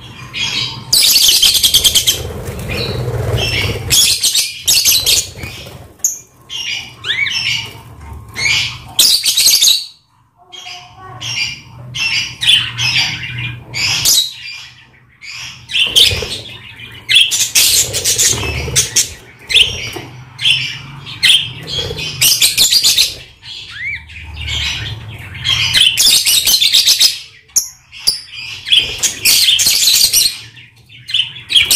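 Budgerigars and lovebirds in an aviary calling constantly, a busy run of high-pitched squawks and chirps with a few brief pauses, mixed with wing flapping as birds fly across the cage.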